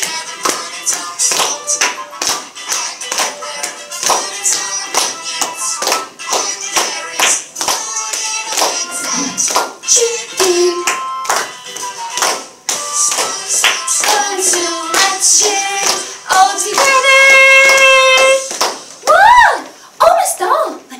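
A song with singing over a steady rhythmic beat, ending on a long held note near the end and then a quick up-and-down slide in pitch.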